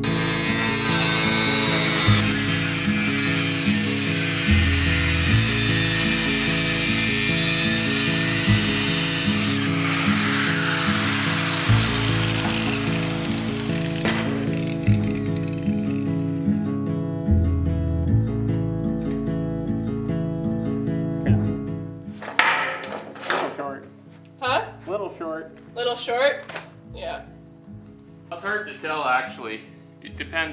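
Angle grinder grinding a steel boat bulwark, a steady high grinding hiss that fades away about halfway through, over background music with a steady beat. The music carries on alone afterwards.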